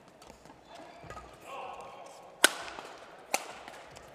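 Badminton rackets hitting the shuttlecock twice in a doubles rally: a sharp crack about two and a half seconds in, the loudest sound here, and a second, lighter one under a second later.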